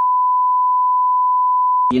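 Censor bleep: one steady, single-pitch tone masking a spoken remark, cutting off sharply near the end as speech resumes.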